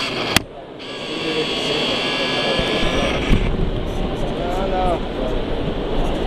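Electric drive motor and gearbox of a radio-controlled model vehicle whining steadily, stopping about three and a half seconds in, over the hubbub of a crowded hall. A sharp click comes about half a second in.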